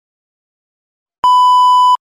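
Test-pattern tone sound effect played with on-screen colour bars: one loud, steady, high beep lasting under a second, starting just over a second in after silence and cutting off abruptly.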